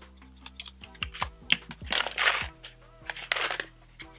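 Small clicks and rustles of a cardboard perfume box and a rollerball bottle being handled, over soft background music, with two louder short bursts about two and three and a half seconds in.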